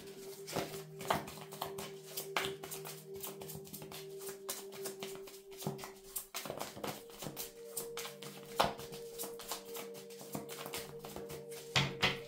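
Tarot cards being shuffled by hand, a run of soft clicks and taps, over quiet background music: a held tone that steps up in pitch about six seconds in.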